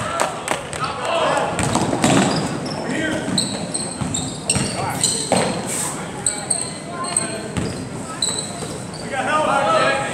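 Basketball game in a gym: a ball dribbled on the hardwood court, sneakers squeaking in short high chirps, and voices from the crowd and players, with a voice rising about a second in and again near the end, all echoing in the hall.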